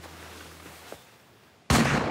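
A shotgun fired once at a flying duck, a sudden loud blast near the end that tails off quickly.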